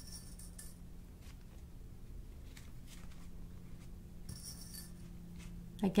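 Faint rustling and a few light ticks of fabric pieces being handled and pinned down by hand, over a low steady hum.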